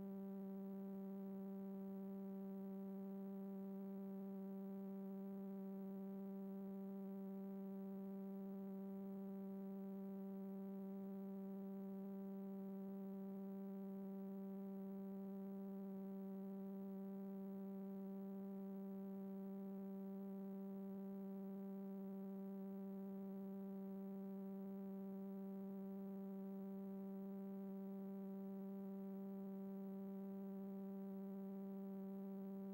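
Faint, steady electrical hum with a buzzy stack of overtones, unchanging throughout. It is the sign of an empty signal: the playback equipment is sitting on a blank blue no-signal channel.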